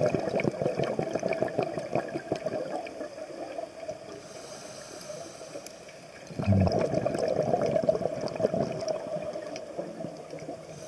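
Underwater bubbling and gurgling from a scuba diver's exhaled air bubbles, in two bursts: through the first few seconds and again from about six and a half seconds in, with a quieter spell between.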